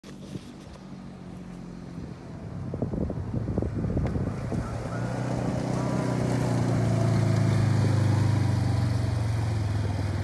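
Side-by-side off-road vehicle's engine running at a steady pitch as it drives along a gravel track towing a small trailer, growing louder as it approaches and loudest about three-quarters of the way through. A few rattles and knocks sound about three to four seconds in.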